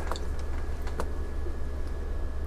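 Steady low hum in a small room, with a couple of faint clicks, one about a second in.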